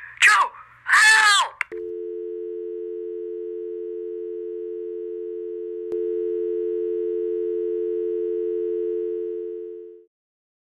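Telephone dial tone: a steady two-note hum that comes on about two seconds in, after a brief voice, and runs without a break, the sign of a phone line gone dead after the call is cut off. About six seconds in it jumps louder with a faint buzz added, then fades out near the end.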